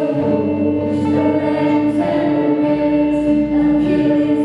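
Live band music: several voices singing together over a band of keyboard, electric guitars, bass and drums, with long held notes and no break.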